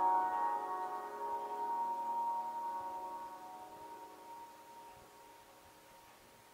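The last bell-like chord of a song playing through a pair of Audio Nirvana 8-inch fullrange speakers on an SMSL SA-S1 Tripath TA2020 amplifier, ringing out and fading steadily to a faint room hush over about five seconds.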